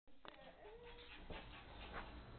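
Faint sounds of two small dogs playing, with one brief, faint whine from a dog a little before the middle and a couple of light knocks.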